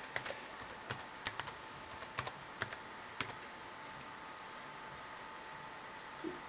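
Toshiba Satellite laptop keyboard being typed on: a quick, irregular run of keystrokes, then typing stops a little over three seconds in.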